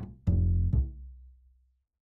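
UJAM Virtual Bassist Mellow software bass playing a short phrase of low plucked notes, the last ringing out and fading away about a second and a half in.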